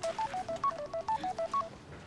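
Mobile phone giving a quick run of about a dozen short electronic beeps at shifting pitches, repeating a short pattern twice, then stopping.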